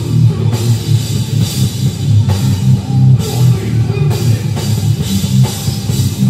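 Hardcore band playing live: distorted electric guitars, bass and a drum kit, with cymbal crashes about once a second.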